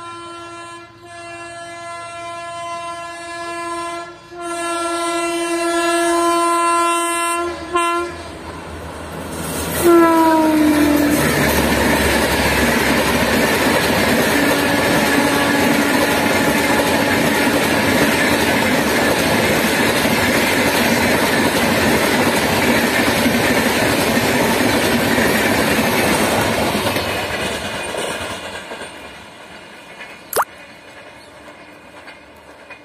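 WAP-4 electric locomotive sounding its horn in three blasts as it approaches, the last the longest, then a short blast whose pitch drops as it passes about ten seconds in. The express's coaches then rumble and clatter past over the rail joints, fading away near the end.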